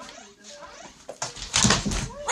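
A wolf's claws scrabbling and its body hitting a hardwood floor as it slips and goes down while reaching for food. It is a loud, brief clatter that starts about one and a half seconds in.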